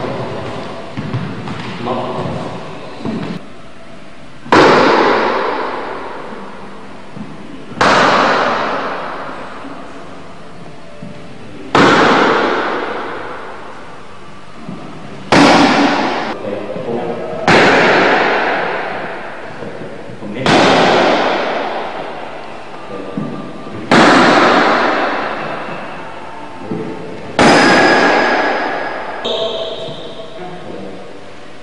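Hard strikes on a leather focus mitt, eight of them spaced two to four seconds apart. Each is a sharp smack followed by a long echo in a bare, hard-walled court.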